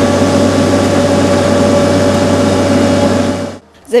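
Engine of a tractor-mounted pipe-puncture rig running at a steady speed, with a low hum and a steady whine over it; it stops abruptly shortly before the end.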